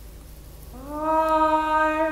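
A young male singer's voice. After a quiet pause, about three-quarters of a second in, he slides up into a new note and holds it steadily.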